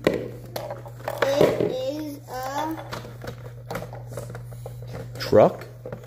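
Hands handling a plastic toy and its container: scattered small clicks and rustles, with a few faint murmured child's sounds and a steady low hum underneath.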